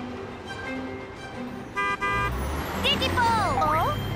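Cartoon vehicle horn tooting twice in quick succession about two seconds in, over light background music. A low rumble follows, and near the end a character's voice makes a short gliding surprised sound.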